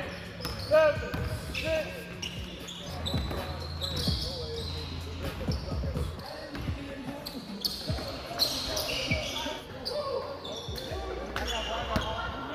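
A basketball bouncing and sneakers squeaking on a hardwood gym floor during a fast pickup game, with players' voices calling out. The squeaks come as short sliding chirps in the first couple of seconds.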